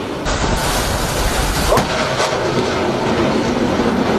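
Steady rushing roar of a C-705 anti-ship missile launching from a fast missile boat, with a sharp crack about two seconds in.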